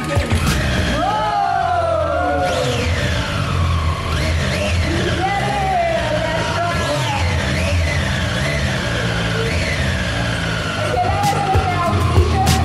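Triumph Street Triple 765 inline-three engines running, revved over and over in quick rising-and-falling blips, with music playing over them.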